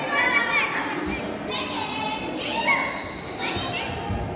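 Children's high-pitched voices calling out several times over the background murmur of a crowd talking in a large hall.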